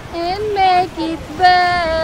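High-pitched singing voices in several phrases of long held notes with short breaks, over a low rush of wind and water.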